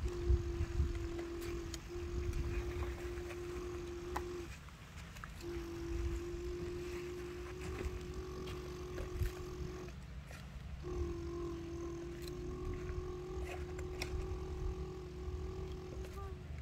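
A steady, engine-like humming drone on one low note, held for several seconds at a time and breaking off briefly twice, as if for breath: a mouth-made imitation of a truck engine for a toy truck being loaded. A low rumbling noise runs underneath.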